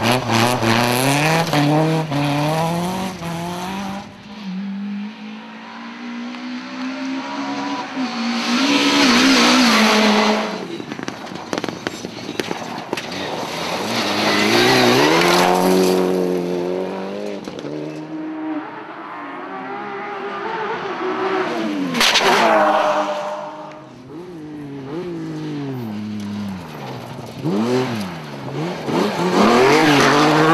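Rally cars racing past one after another at full throttle, engines revving hard, the pitch climbing and dropping at each gear change. The loudest passes come about a third of the way in, at the middle, about two thirds in and at the end.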